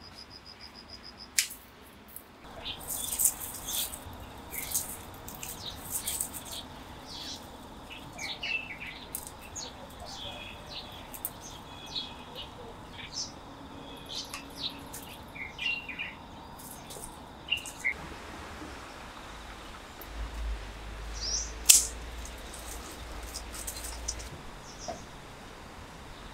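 Small birds chirping in short, scattered calls, with two sharp clicks, one about a second and a half in and a louder one near the end.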